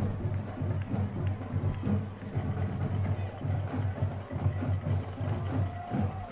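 Band music in the stadium stands, with drums beating fast and steadily.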